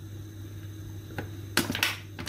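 Quiet kitchen room tone with a low steady hum, a faint click about a second in, and a short, sharp burst of handling noise near the end.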